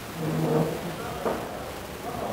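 A man's voice, brief and indistinct, over steady background noise of a busy room, with a short knock about a second later.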